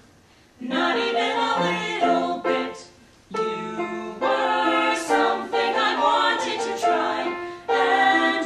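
Live singing of a stage song in sung phrases. It starts about half a second in, breaks briefly around three seconds, then runs on unbroken until just before the end.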